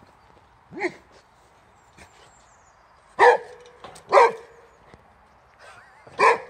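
Boxer dog barking: one shorter bark about a second in, then two loud barks about a second apart a couple of seconds later.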